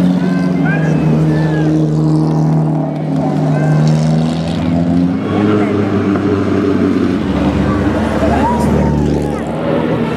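Engines of vintage sports and racing cars passing slowly at low revs over crowd chatter. A steady engine note shifts pitch about halfway through, and a deeper engine sound comes in near the end as another car approaches.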